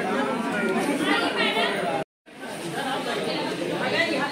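Indistinct chatter of many party guests talking in a hall, cut off by a brief total dropout about halfway through before the voices resume.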